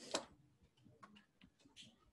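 A sharp click just after the start, followed by a few fainter clicks and taps.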